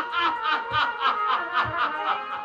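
A man laughing into a handheld microphone in a quick, even run of "ha-ha" bursts, about five a second: an actor's drawn-out stage laugh.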